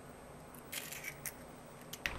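An egg being cracked and its shell pulled apart over a small bowl: a few faint, crisp shell clicks about three-quarters of a second in, and one more near the end.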